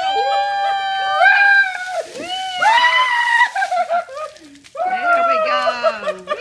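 High, drawn-out shrieks and yells from people having buckets of ice water poured over them, with water splashing down near the middle.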